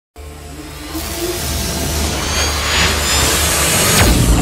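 Intro music for an animated logo, building steadily louder, with a whooshing sweep through the middle over a deep low rumble.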